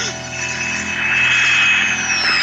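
Film sound effect of a flying metal sphere approaching: a high steady whine over a rushing hiss that swells louder through the first second.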